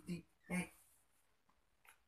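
Short speech: a voice saying "what" and one more brief utterance, then about a second of quiet room tone.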